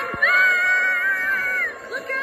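Cartoon sound track played from a TV's speaker: a brief falling swoop, then a character's high, held cry lasting about a second and a half.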